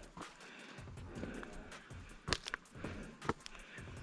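Footsteps on dry leaf litter and stone, with a few short sharp crackles about two and three seconds in, over faint music.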